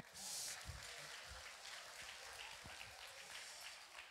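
Faint room noise from an audience in a hall, an even murmur and rustle. It is a little louder for the first half second, with a few soft low thuds.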